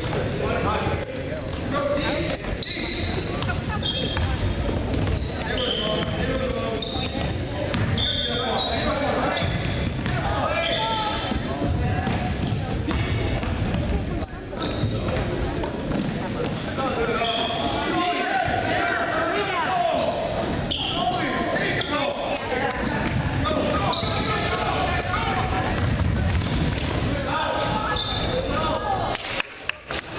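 Basketball being dribbled and bounced on a hardwood gym floor, with short high sneaker squeaks and many knocks as players run the court. Spectators' voices carry through the echoing gym.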